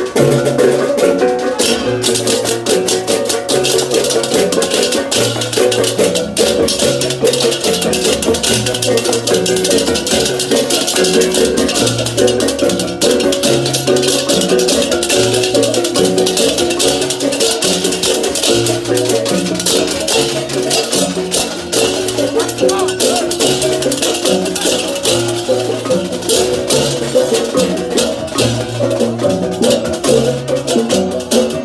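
Balinese baleganjur gamelan played live in procession: rapid, dense clashing of hand cymbals over ringing pitched gongs and kettle-gongs, with a low gong pattern repeating underneath.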